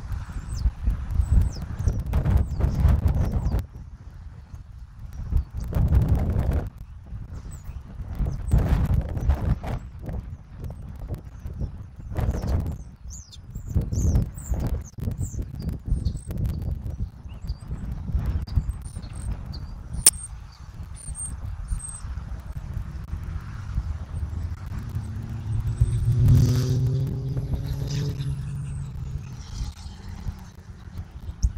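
Road traffic passing in waves of low rumble, with a heavier vehicle's steady engine hum standing out about 26 seconds in. Small birds chirp faintly and high, and there is a single sharp click about 20 seconds in.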